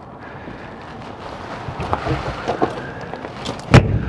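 A fifth-wheel trailer's storage compartment door slammed shut: one solid thud as its slam-shut latch catches, near the end. Before it come a few faint knocks and handling sounds.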